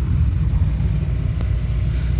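Low, steady rumble of a car driving along a road, heard from the moving car, with a faint click about one and a half seconds in.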